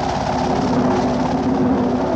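Old film soundtrack: music with long held notes over a steady rushing noise.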